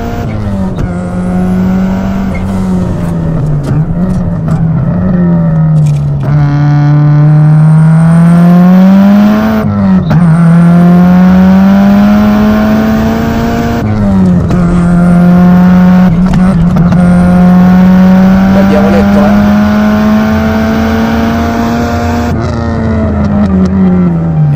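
Turbocharged flat-four engine of a 1999 Subaru Impreza GC8, stroked to 2.2 litres and fitted with equal-length stainless headers and a 76 mm exhaust, heard from inside the cabin while driven hard. The engine note climbs steadily under acceleration and drops sharply at each gear change, several times over.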